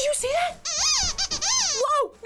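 Chicken puppet character's squeaky, chirping voice: a quick run of high calls that slide up and down in pitch, standing in for speech.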